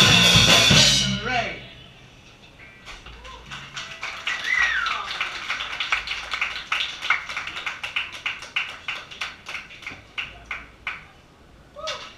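A live rock band's song ends on its last loud chord about a second in, followed by scattered applause and a few cheers from a small audience.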